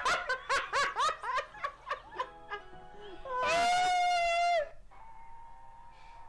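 Two women laughing hard in quick repeated bursts for about the first two seconds, then music from the clip, with a loud, long, high-pitched held voice about a second long around the middle and quiet music near the end.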